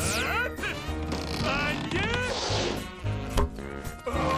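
Cartoon soundtrack: background music under a string of short, high squeaky chirps that rise and fall, a falling whoosh at the start, and a sharp whack about three and a half seconds in.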